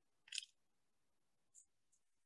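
A toothbrush's bristles flicked once with a short, scratchy rasp, spattering white acrylic paint as stars; a fainter high tick follows near the end.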